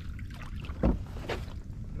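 A hooked sunfish splashes at the water's surface as it is reeled in: two sharp splashes, the louder a little under a second in and another about half a second later.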